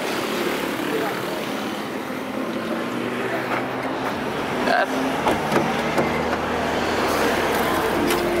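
A motor vehicle engine running steadily, under open-air noise. Its low rumble grows stronger from about five seconds in.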